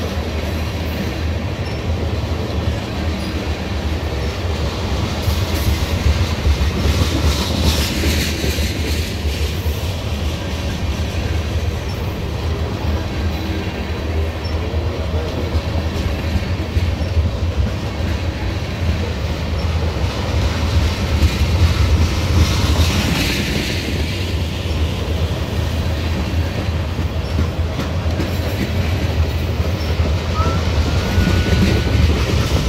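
Ethanol tank-car train rolling past at speed: a steady heavy rumble of steel wheels on rail with a rhythmic clickety-clack. It turns harsher and brighter twice, around eight and twenty-three seconds in.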